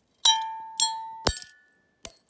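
Glass clinking: three sharp strikes about half a second apart, each leaving a clear ringing tone that fades between strikes, the last with a duller knock under it.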